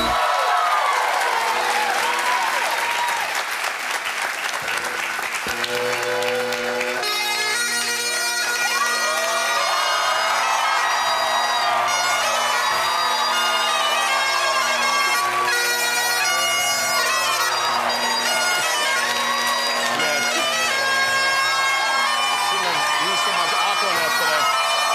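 Bagpipes: the steady drones sound first under audience applause and cheering, then about seven seconds in the chanter takes up a sustained melody over the drones.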